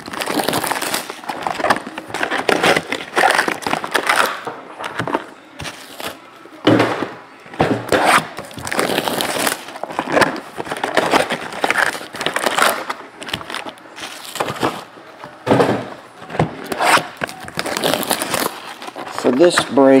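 Cellophane shrink wrap crinkling and tearing as a 2015-16 Panini Prizm basketball hobby box is unwrapped and opened by hand, in irregular crackling bursts with brief pauses.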